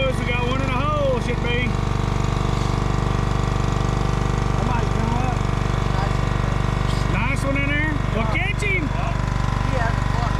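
A boat motor idling with a steady, even low drone throughout. Voices call out faintly over it at the start and again about seven seconds in.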